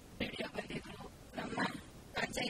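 A person speaking in a local Indian language, not English, in short phrases with brief pauses.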